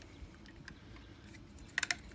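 Faint handling ticks, then a quick run of three or four sharp hard-plastic clicks near the end as the clear plastic clip-on payload release for a DJI Phantom 4 is handled at its landing-gear mount.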